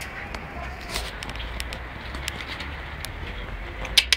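A dog's claws ticking lightly on a concrete floor as it walks, a few clicks each second, over a steady low rumble. A louder click comes right at the end.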